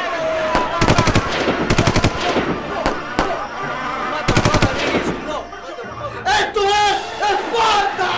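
Three short volleys of rapid, sharp cracks like machine-gun fire, coming about a second in, about two seconds in and about four and a half seconds in, over voices. Men yelling loudly near the end.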